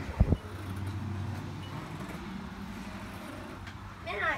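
Two sharp thumps on the phone's microphone near the start from handling, then a low steady hum that is strongest for the first couple of seconds and fainter after, over the steady hiss of rain.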